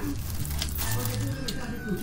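Plastic food packaging crinkling in spurts as bags are handled, over low background music.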